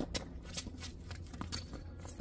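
Tennis rally on a hard court: a faint, distant racket hit right at the start, then a scatter of light ticks and scuffs from shoes on the court and the ball.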